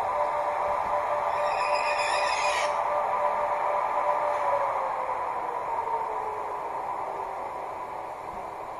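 Märklin H0 DB class 401 ICE model with an ESU LokSound 5 sound decoder, playing the ICE's electric driving sound through its small loudspeakers. A steady whine over a hum slides down in pitch and fades as the model slows to a stop, with a short hiss about two seconds in.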